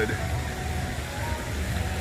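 Outdoor background noise in a busy pedestrian plaza: a low, uneven rumble with faint distant voices.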